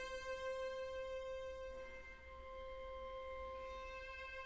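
Slow, quiet classical music: a violin holding one long, steady note that thins out about halfway through.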